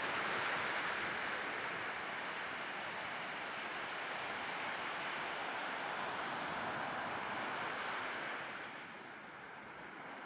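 Small sea waves breaking and washing up a sandy beach, a steady surf hiss that eases slightly near the end.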